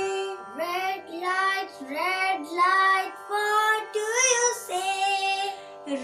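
A woman and a child singing a children's song, in short sung phrases with sliding notes over a steady held musical backing.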